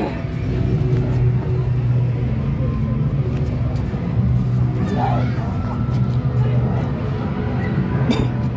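A steady, low droning hum runs under a faint wash of background noise, with a brief voice about five seconds in.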